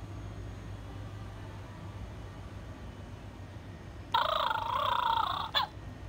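Steady low store hum, then about four seconds in an animated plush ghost toy starts playing a loud, wavering electronic sound from its small speaker for about a second and a half, followed by a couple of sharp clicks.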